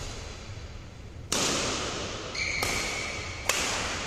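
Badminton rackets striking a shuttlecock three times, a sharp crack about every second that echoes in a large hall. Shoes squeak on the court floor from about halfway through.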